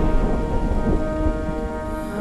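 Rain falling with low thunder, fading away, while soft held music notes sound underneath.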